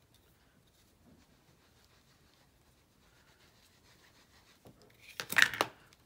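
Faint handling of stamping supplies, then a short, loud scraping rustle about five seconds in: a clear stamp on an acrylic block pressed and rubbed against a sheet of paper.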